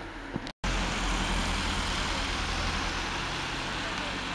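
A moment of speech cut off abruptly, then steady outdoor background noise: a low rumble with a hiss above it, unchanging to the end.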